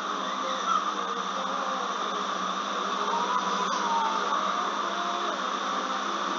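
A steady whirring hiss of background noise, with no speech.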